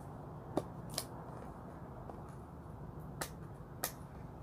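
Four sharp clicks and taps from a small watch box being handled, its lid opened and closed, two close together near the start and two more near the end.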